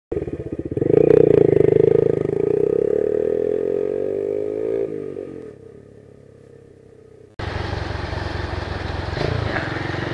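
A motorcycle pulls away and accelerates, its engine pitch rising steadily, then dropping about five seconds in and fading as it rides off. A sudden cut a little after seven seconds brings on-board riding sound: the engine running with road and wind noise on a cobblestone street.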